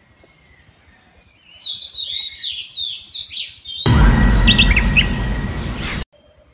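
A bird calling in a quick run of short downward-sweeping chirps over a steady high insect drone. About four seconds in, a loud rushing noise with a deep rumble swamps it, then cuts off abruptly.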